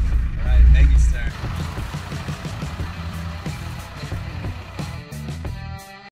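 Land Rover Defender 90 engine and drivetrain rumbling, heard inside the cab, louder for about the first second and then quieter and fading, with a brief voice early on and music under it.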